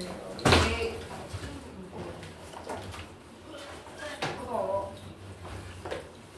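A single sharp thump about half a second in, followed by low, indistinct talking.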